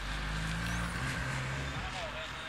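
Car engine running with a steady low hum, easing off slightly in level.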